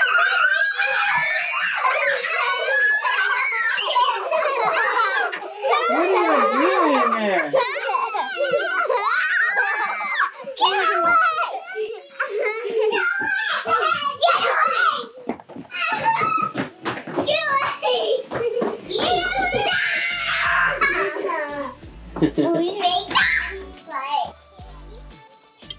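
Several young children shouting, squealing and laughing excitedly in a small room, with background music; a low, steady beat comes in about two-thirds of the way through.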